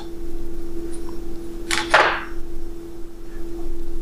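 A single short swish, rising and falling about halfway through, as a steel ruler is slid back into a nylon tool-tote pocket. A faint steady hum runs underneath.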